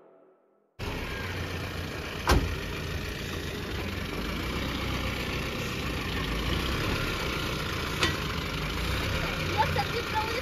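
Mahindra Bolero Maxitruck Plus pickup's engine idling steadily, with a sharp knock a couple of seconds in and a fainter one later.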